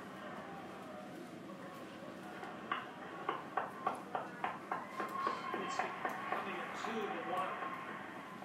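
Steady background hum of the space station's equipment, with faint steady tones, heard through video playback. A run of light clicks, about three a second, comes through the middle.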